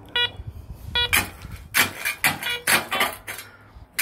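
Metal detector giving two short beeps of the same steady tone in the first second, the consistent repeat signalling a buried metal target under the coil. Then a small shovel scrapes and strikes rocky, gravelly soil several times.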